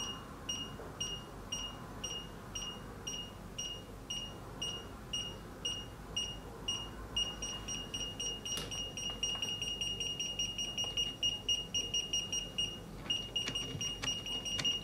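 Brymen TBM251 digital multimeter's beeper in its EF non-contact voltage mode, detecting the field around a live mains cable: a high-pitched beep about twice a second that quickens into a near-continuous tone from about seven seconds in as the cable is brought closer and the field reads stronger. The tone stops briefly about a second before the end, then sounds again.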